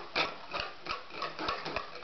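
A white plastic slotted spatula tapping against a red plastic bowl in about half a dozen irregular light knocks, like a child drumming.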